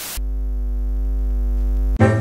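TV-static transition sound effect: a brief hiss of white-noise static that gives way, a fraction of a second in, to a steady, deep electronic buzz that slowly swells.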